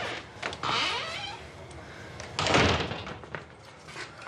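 A room door being opened and closed: clicks of the handle and latch, a short creak, and a louder noisy shutting sound about two and a half seconds in.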